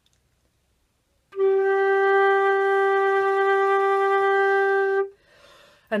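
Concert flute holding a single steady mid-range note for about four seconds, played on almost no breath and stopping as the air runs out. A short, soft breathy sound follows.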